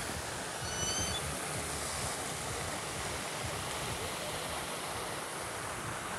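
Steady splashing of a plaza fountain's water jets falling into the basin, an even rushing noise. A brief faint high chirp sounds about a second in.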